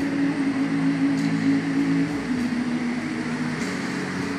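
Water jets of a musical fountain show rushing with a steady hiss, under a held low chord from the show's music that shifts twice.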